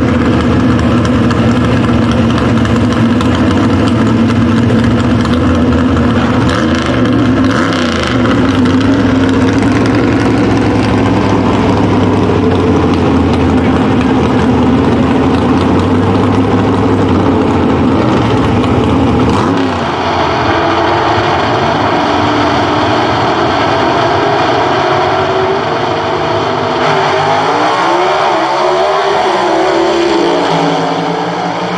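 Two gasser drag cars' engines idling loudly at the starting line, with a brief rev about seven seconds in. Near the end the engines climb steeply in pitch as the cars launch and accelerate down the drag strip.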